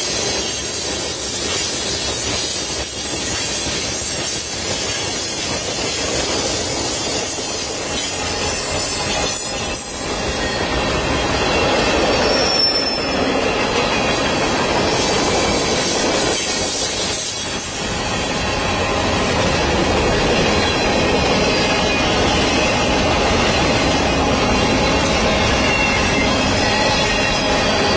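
A loaded mixed freight train's cars rolling past close by: a steady, loud rumble and clatter of steel wheels on rail, with some high wheel squeal.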